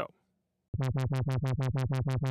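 Synthesizer sawtooth tone on one steady low pitch, starting about three-quarters of a second in. An LFO sweeps its low-pass filter cutoff up and down about eight times a second, giving a fast, greatly exaggerated wobble between bright and dark.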